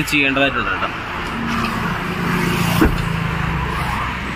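A motor vehicle's engine passing on the road, a steady hum that swells through the middle, with a single sharp click about three seconds in.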